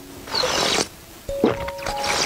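Green jelly drink being slurped from a plastic test tube held to the lips: two short wet sucking slurps about a second and a half apart, with a sharp click between them, over background music.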